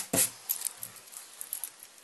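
Faint, scattered light clicks and handling sounds of hands picking up a small bracelet with a metal clasp.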